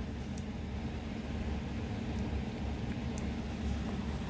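A steady low rumble of background noise with a few faint ticks.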